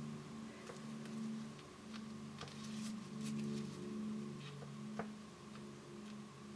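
Faint handling sounds of vinyl-gloved fingers pressing clay into a silicone mold: a few soft scattered clicks and rubs over a low steady hum.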